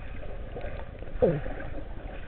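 Steady low, muffled water noise heard through a GoPro's waterproof housing, with a person's short falling "oh" and a laugh about a second in.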